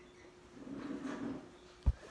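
Handling noise on a phone held close: a soft rubbing, then a single sharp low thump near the end as the phone is bumped.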